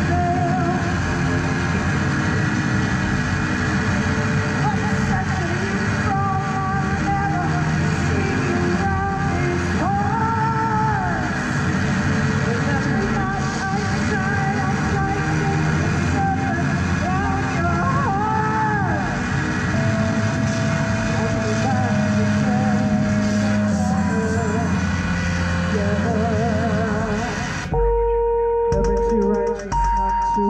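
Live experimental noise music: a dense, steady wall of electronic noise with warbling, gliding tones and a voice run through effects. Near the end it cuts abruptly to a sparser texture of a few held tones over low pulses.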